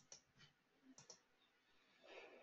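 Faint computer mouse clicks in near silence: two pairs of quick clicks about a second apart.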